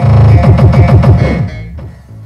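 Electronic music with a fast, heavy kick-drum beat, about four beats a second, that drops much quieter about three-quarters of the way through.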